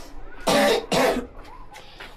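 A person coughing twice in quick succession, two short hard coughs about half a second apart.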